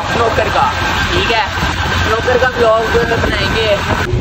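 A man's voice talking over a motorcycle's engine running at road speed, with wind noise on the microphone.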